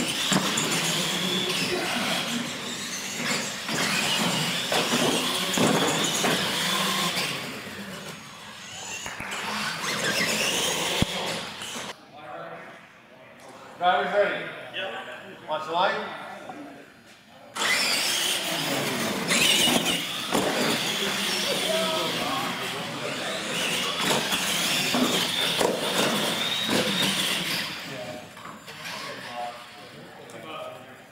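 Electric R/C monster trucks racing, their motors and gears whining, with voices in a large hall. About twelve seconds in it drops to a quieter stretch of voices, and the whining comes back about five seconds later.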